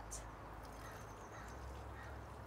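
Faint background with a bird calling in a quick series of high, evenly spaced ticks.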